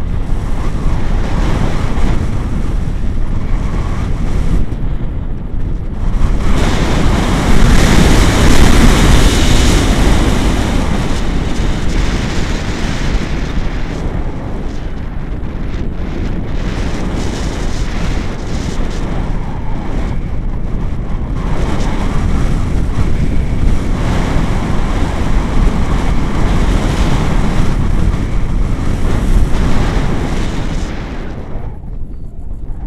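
Airflow rushing over the microphone of a camera on a tandem paraglider in flight: a loud, steady rush that swells to its loudest about seven to ten seconds in, then eases a little.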